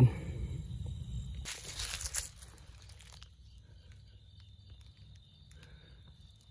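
Footsteps and rustling in dry grass with handling noise on a handheld camera, a louder rustle about a second and a half to two seconds in, then fading to a quiet stretch.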